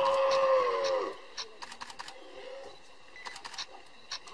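A drawn-out animal cry lasting about a second, dropping in pitch as it dies away, followed by scattered light clicks.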